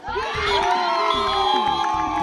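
Crowd of spectators breaking into loud cheering and shouting all at once, many voices overlapping and held loud.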